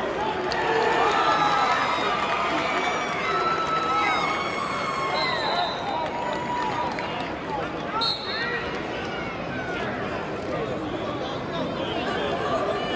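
Arena crowd with many voices shouting and calling out to the wrestlers. A short, sharp referee's whistle blast sounds about eight seconds in as the period starts.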